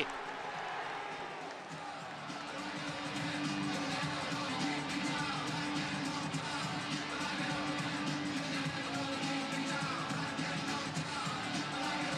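Stadium crowd cheering and singing after a goal, a dense steady mass of voices with some sustained chanting.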